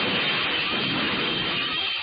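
Cartoon steam-locomotive sound effect: a loud, steady hissing screech with a faint high squeal over it.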